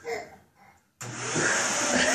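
Upright bagless vacuum cleaner switching on suddenly about halfway through and then running loudly and steadily.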